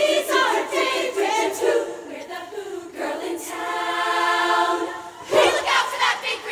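A large women's choir singing a cappella in close harmony, moving through a phrase and then holding one long sustained chord. A sudden loud burst of voices comes near the end.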